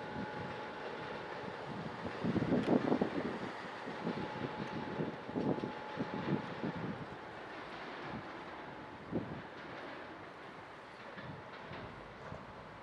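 ČD class 460 electric multiple unit pulling away over pointwork, its wheels clacking over rail joints and switches in a cluster of knocks, with one more knock a little later. A steady whine fades out partway through, and the sound dies away as the train recedes.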